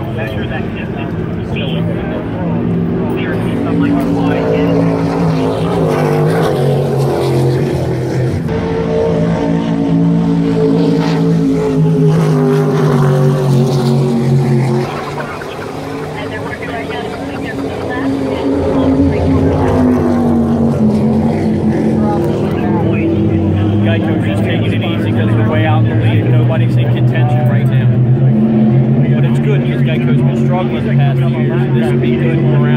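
Offshore racing powerboat engines running hard, a loud pitched drone. Its pitch slides down and the level dips about halfway through as the boats go by, then it builds again toward the end.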